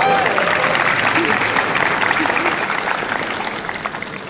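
Crowd applauding: dense clapping, loudest at first and gradually dying down toward the end, with a few voices mixed in.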